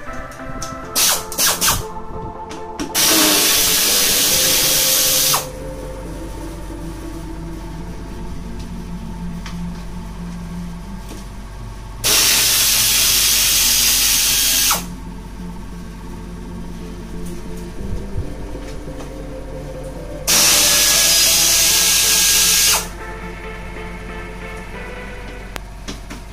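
Handheld pneumatic tool on a red air hose running in three bursts of about two and a half seconds each, with a loud rush of air, as it undoes the fasteners holding a Honda Odyssey's rear bumper.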